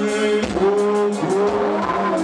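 Music with singing, the voices holding notes and sliding between them.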